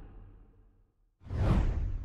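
Whoosh transition sound effect about a second in, starting suddenly with a deep low end, its top end sweeping down, then fading away. It comes after a short gap in which the previous audio dies out.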